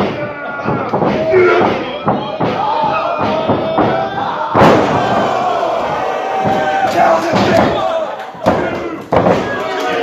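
A wrestler's body slamming onto the ring mat with a sharp thud about four and a half seconds in, and more thuds near the end, over a crowd shouting throughout.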